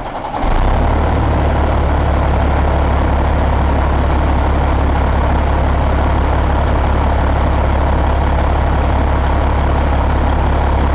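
2007 Caterpillar C15 inline-six diesel engine coming up to speed just after starting, about half a second in, then idling steadily with a low, even sound.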